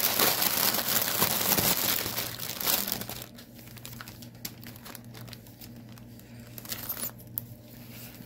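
Clear plastic bag of a cross-stitch kit crinkling and rustling as it is handled, busy and loud for the first three seconds, then softer, scattered crinkles.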